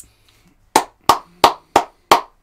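A man clapping his hands four times at an even pace, about three sharp claps a second, starting a little before the middle.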